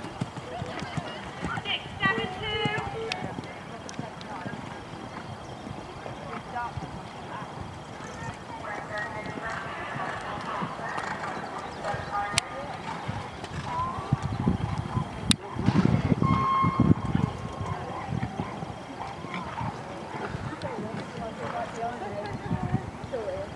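Hoofbeats of a grey show jumper cantering over an arena's sand surface, heavier about two-thirds of the way through, with voices in the background.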